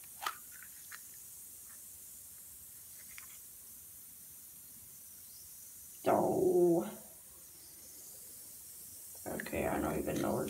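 A few light clicks of a hard plastic capsule being handled and popped open, the sharpest one just after the start. About six seconds in comes a short vocal exclamation, falling in pitch.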